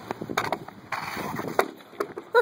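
A long pole striking and scraping along asphalt pavement as a running pole-vault attempt fails, with quick footsteps. Sharp knocks come about half a second in and again near the end, with a rough scraping noise between them.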